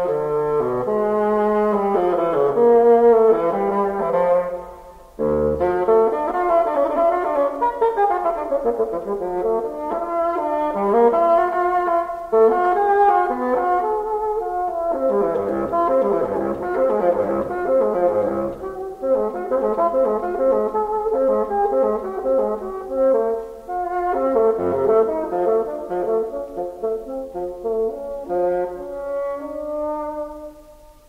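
Bassoon playing fast runs and arpeggios in a classical concerto, with a brief break about five seconds in.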